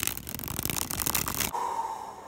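A deck of thick Cartamundi Copag 310 playing cards with a linen finish dribbled from one hand into the other: a fast, even patter of card edges flicking off the thumb for about a second and a half, then cutting off.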